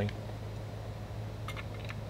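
A few quick, light taps of a screwdriver tip on the chassis of a 1/10 RC buggy, starting about one and a half seconds in, pressing the suspension to check whether the shocks spring back, a test of the shock seals. A low steady hum lies underneath.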